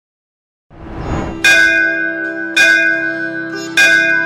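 A bell struck three times, a little over a second apart, each strike ringing on over a sustained drone that swells in just before the first strike, opening the intro music.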